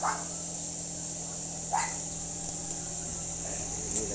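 A dog barking twice, two short barks a little under two seconds apart, over a continuous high insect buzz and a steady low hum.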